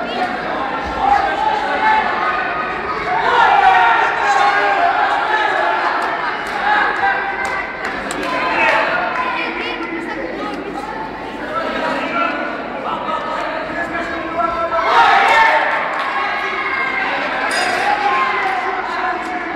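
Indistinct overlapping voices of spectators chattering in a large, echoing sports hall, swelling a little about three seconds in and again near the end.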